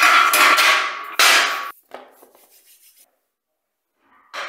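A garage door spring struck as a sound effect, ringing with a short reverberation: a loud strike at the start, a second strike about a second later, and the ringing dies away over the next second or so.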